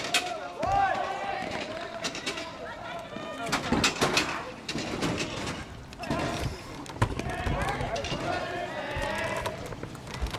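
Background voices of spectators and players calling during a lacrosse game, with a few sharp knocks from play, a cluster about four seconds in and another at seven seconds.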